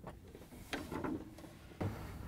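A few faint plastic taps and knocks as a gloved hand handles the ice bin in a refrigerator freezer compartment.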